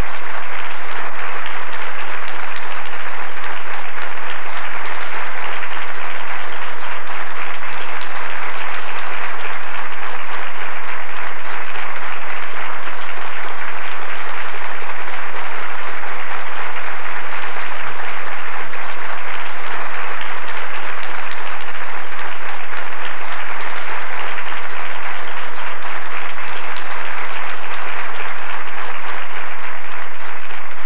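Audience applauding, a loud, even, sustained clapping with no break.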